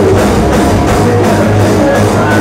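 Live rock band playing loud: electric guitars and bass over a drum kit keeping a fast, even beat of about four hits a second.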